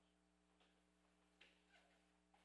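Near silence: room tone with a faint steady electrical hum and a few faint, brief sounds about half a second and a second and a half in.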